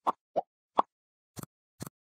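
Animated end-screen sound effects: three short pops in the first second, then two sharp mouse-click sounds as the like and subscribe buttons are clicked.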